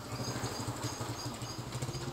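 A steady low hum of an engine running at a distance, with faint outdoor background.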